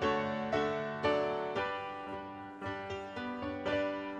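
Piano playing chords, struck about once or twice a second, each ringing and fading before the next.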